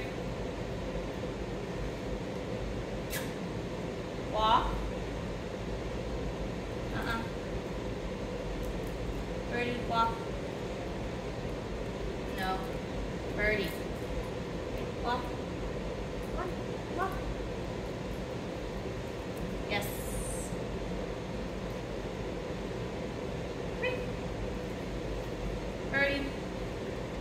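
Short, high-pitched voice sounds come every few seconds, some rising in pitch, over a steady low hum.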